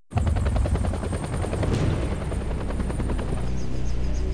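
Helicopter rotor blades chopping fast and evenly over a deep engine rumble, starting abruptly. The chop settles into a steady low drone in the second half.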